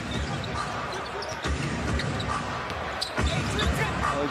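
Basketball being dribbled on a hardwood court: a series of low thumps every quarter to half second. Arena background noise and short high sneaker squeaks run under it.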